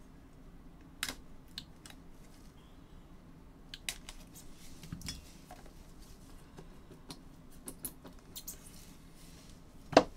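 A sealed cardboard trading-card box being cut open with a box cutter and unpacked: scattered light clicks, scrapes and taps of blade and cardboard, with a sharp knock at the very end.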